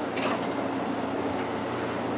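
Steady background room noise with a low hum, with two faint brief high sounds near the start.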